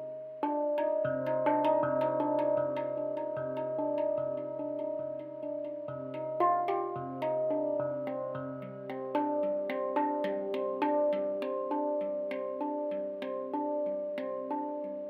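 A steel handpan played with the fingers: a steady flow of struck, ringing notes, with a low note recurring under quicker higher ones.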